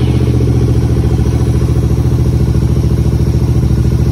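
Royal Enfield Continental GT 650's parallel-twin engine idling steadily with an even, fast pulse, just after a cold start.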